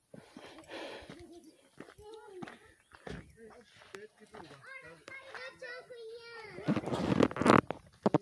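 People talking indistinctly in the background, including a child's voice. Near the end come a few louder, breathy gusts close to the microphone.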